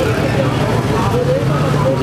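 Indistinct voices of people talking over a steady low motor hum of street traffic.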